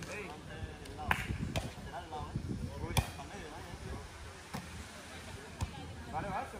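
A volleyball being struck by players' hands and forearms during a beach rally: several sharp slaps a second or more apart, the loudest about halfway through.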